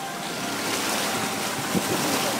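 A vehicle ploughing through a deep muddy puddle: a steady rushing splash of water thrown up by the tyres, with wind buffeting the microphone.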